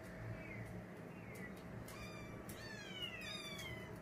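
Kittens mewing faintly: several short, high-pitched cries, each falling in pitch, scattered through a few seconds.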